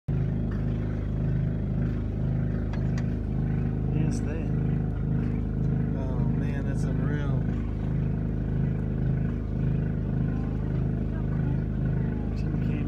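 Boat engine idling steadily with a regular throb a little more than once a second.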